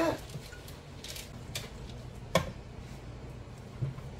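A whisk stirring thick oatmeal batter in a plastic mixing bowl, with a few short clicks as the whisk knocks the bowl; the sharpest comes a little past the middle.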